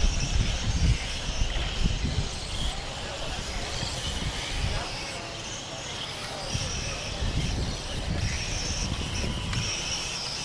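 Electric radio-controlled M-chassis cars racing around the track, their motors whining high and rising and falling in pitch as they pass. Wind buffets the microphone with low rumbles at the start and again later on.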